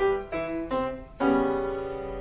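Grand piano playing three single notes stepping downward, a brief lull, then a loud chord just over a second in that rings on.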